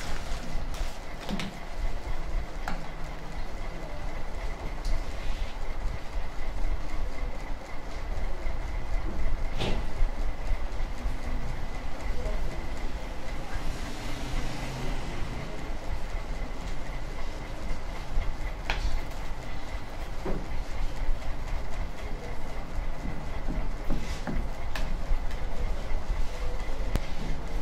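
A steady mechanical hum and rumble runs underneath, with scattered light clicks and rustles from handling paper petals and a glue tube.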